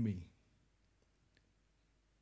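A man's voice finishing a word, then near silence with a faint click about one and a half seconds in.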